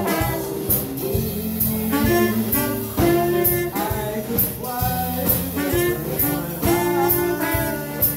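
A live jazz band's horn section of saxophone, trumpet and trombone playing together over a drum kit, with a cymbal struck steadily on the beat.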